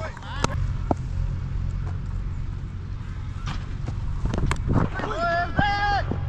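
Low, steady wind rumble on a helmet-mounted action camera's microphone, with a few faint knocks. Near the end a player gives a long, drawn-out shout from across the field.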